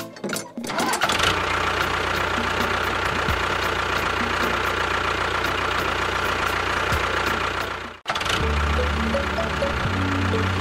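Tractor engine running steadily over background music; it cuts off abruptly about eight seconds in and comes back as a lower, steadier hum.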